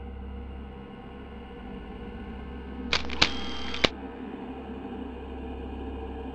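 Low steady drone with a sudden burst of hiss about halfway through, lasting about a second and marked by three sharp clicks.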